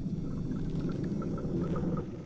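A steady low rumble with faint, short high notes scattered over it.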